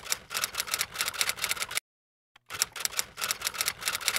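Typewriter keystroke sound effect: two quick runs of mechanical key clicks, with a short pause between them, as text types out on screen.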